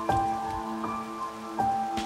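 Background music: a slow melody of held, pitched notes, a new note struck about every three-quarters of a second.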